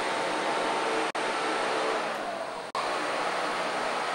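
Small motor-driven propeller of an airship gondola's thrust-vectoring unit running with a steady airy whir, with two very brief dropouts, about a second in and near three seconds.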